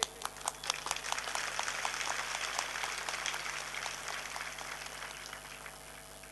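Audience applause: a patter of many hand claps that slowly thins out and dies away.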